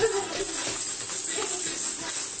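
The metal coins or jingles of a belly-dance hip skirt jingling steadily as a child dances.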